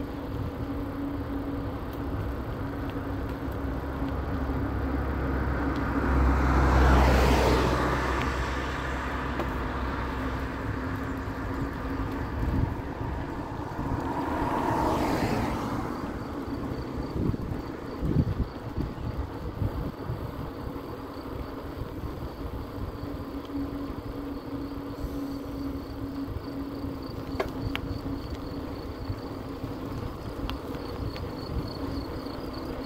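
Steady tyre-on-asphalt and wind noise from a bicycle ride, with a faint steady hum. Two louder swells build and fade about seven and fifteen seconds in, like vehicles passing. A thin high whine joins in from about halfway.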